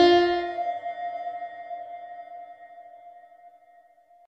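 The song's final keyboard chord ringing out and fading away, with one high note lingering longest before the sound dies out near the end.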